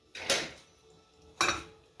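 Kitchen things being handled on a counter as a glass baking dish is picked up. A short scrape just after the start, then a sharp knock about a second and a half in.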